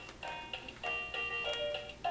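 Electronic melody from a baby activity centre toy: a string of short electronic notes, a new note about every third of a second.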